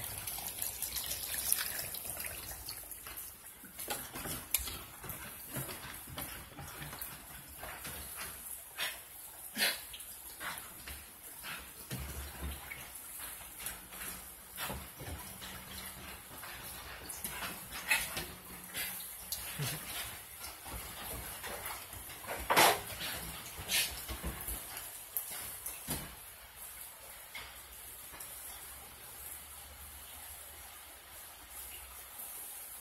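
Two young dogs playing and wrestling, with scattered scuffles and knocks and an occasional dog sound, the loudest about two-thirds of the way through, over the steady hiss of falling rain.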